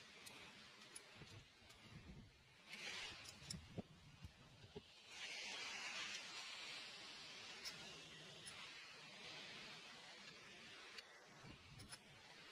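Quiet handling of scope rings and a small Allen key: a few light metal clicks, mostly around the middle, over a soft hiss that swells for several seconds.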